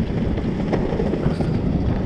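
Skatebolt electric longboard rolling over a concrete sidewalk: a steady low rumble from the wheels with wind buffeting the microphone, and one sharp click about three-quarters of a second in.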